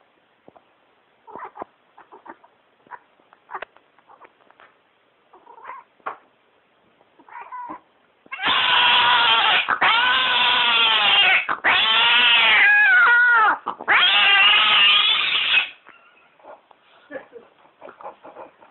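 A cat yowling loudly in four long calls whose pitch rises and falls, with short breaks between them, starting about eight seconds in. Before that, only faint soft scuffling sounds.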